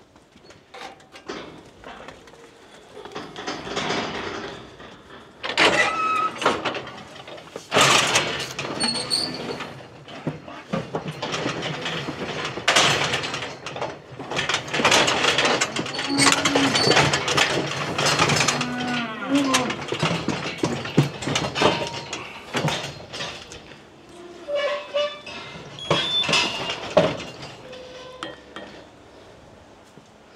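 Galvanised-steel TE Pari Lenta cattle crush clanging and rattling as its gates and levers are worked, with repeated sharp metal knocks. A Limousin weanling bawls a few times about halfway through.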